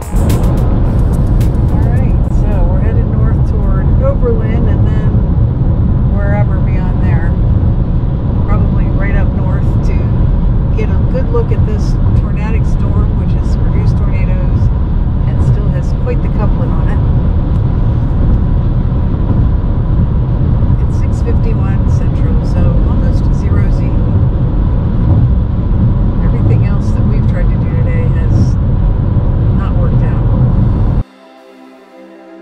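Road noise inside a moving car at highway speed: a loud, steady low rumble of tyres and engine, with faint, indistinct voices talking under it.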